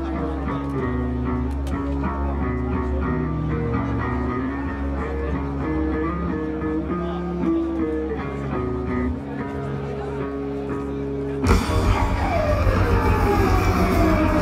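Live rock band: electric guitar and bass playing a melodic riff over a sustained low bass, then about eleven seconds in the drums and cymbals crash in and the full band plays louder.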